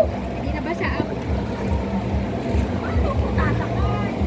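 A continuous low rumble that comes and goes, with a steady low mechanical hum under it and faint voices now and then.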